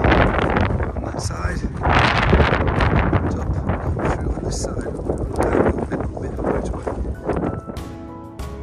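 Wind buffeting the microphone in gusts, with heavy rumble, swelling about two seconds in and again past the middle. Music comes in at the very end.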